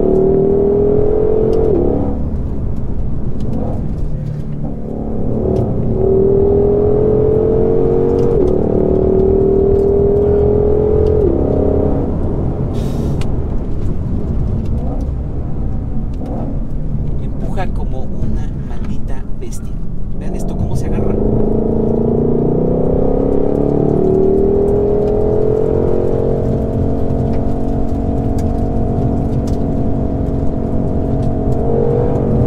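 Ford Shelby GT500's supercharged 5.2-litre V8 heard from inside the cabin under hard acceleration: the revs rise in a series of pulls, each ended by a quick upshift that drops the pitch. Midway the note falls away in a lull off the throttle, then the engine pulls again and levels off at a steady high note near the end.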